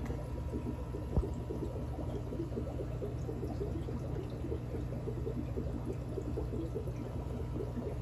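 Aquarium water trickling and bubbling steadily from the tank's filter, a dense quick patter over a faint steady hum. A single sharp click about a second in.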